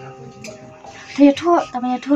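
A young woman crying, her voice rising and breaking into loud sobs in the second half, over soft background music with long held notes.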